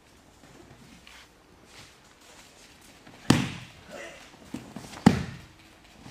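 Two loud, sharp knocks about two seconds apart, each echoing in a large hall, with a few lighter taps between them: impacts during aikido practice with wooden weapons.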